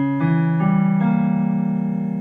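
Piano playing chords, held and ringing, with the notes changing a few times in the first second before the last chord sustains and slowly fades.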